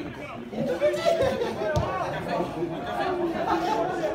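Several voices of spectators talking over one another, with one short sharp knock a little before halfway.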